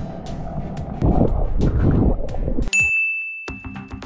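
Muffled rushing water noise heard through an underwater camera in a pool. About two-thirds of the way in, the water sound cuts out and an edited bright 'ding' chime sounds, ringing on as one steady high tone.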